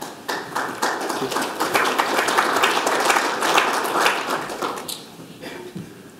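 An audience of seated people applauding, a dense patter of many hands clapping that builds and then dies away about five seconds in.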